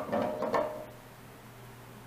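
Rubbing and scraping as the resin-and-wood bowl blank is handled on the wood lathe, a few strokes in the first half second, then it goes quiet with only a low steady hum left.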